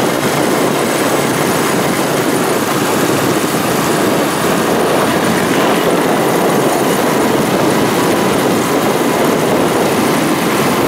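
Steady engine and road noise of a motorcycle cruising slowly through city traffic, with wind rushing over the microphone of a rider's camera.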